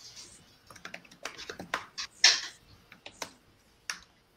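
Typing on a computer keyboard: a run of irregular keystroke clicks, the loudest about two seconds in.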